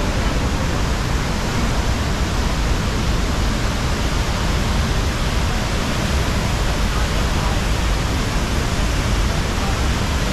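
Steady, unbroken rush of a large waterfall pouring into its pool.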